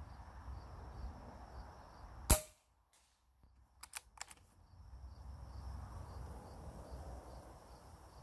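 Hatsan Flash .25 PCP air rifle firing one shot about two seconds in, a sharp crack, followed a second or two later by a few quick metallic clicks as the action is worked to load the next pellet.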